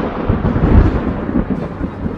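Loud, deep rumbling like thunder, dying away slowly.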